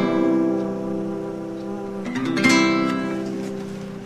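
Guitar chords strummed with no singing: one chord rings on and fades, a second is strummed about two seconds in and fades away near the end, closing the song.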